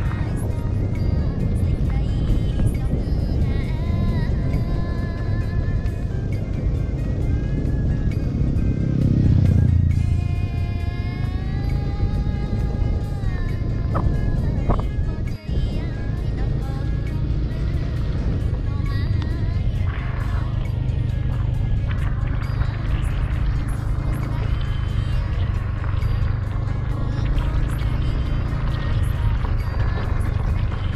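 Steady motorbike riding noise on a gravel road, a continuous low engine and wind rumble, with music mixed over it. A held, slightly rising melody sounds about a third of the way in, and there is a brief drop-out about halfway.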